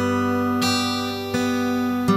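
Acoustic guitar fingerpicked slowly: single notes of a chord are plucked one at a time and left ringing over a held bass note. New notes sound about half a second and a second and a half in.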